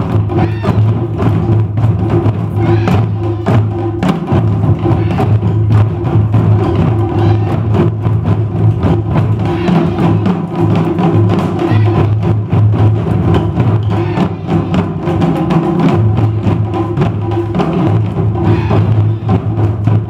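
Japanese taiko drum ensemble playing without a break: large barrel-shaped drums on stands, a row of small drums and shoulder-slung rope-tensioned drums struck together with wooden sticks in a dense, driving rhythm with a strong deep boom.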